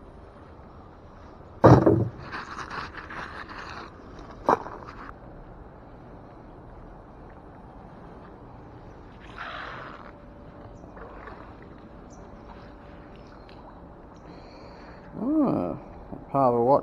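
A loud clank about two seconds in as a magnet-fishing find is dropped into a bucket, then a second or two of rustling and a sharp click. Around nine seconds in comes a short splash as the magnet on its rope goes back into the canal.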